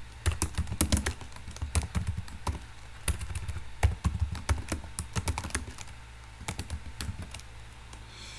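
Typing on a computer keyboard: a quick, irregular run of keystrokes that thins out near the end.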